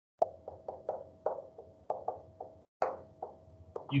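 Dry-erase marker tapping and scratching against a whiteboard while words are written: a quick, uneven string of short taps.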